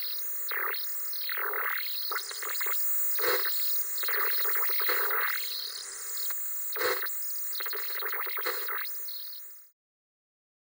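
Television static sound effect: a hissing noise with sweeping, glitchy whooshes that fall and rise, and two sharp crackles, one about three seconds in and one about seven seconds in. It fades out suddenly near the end.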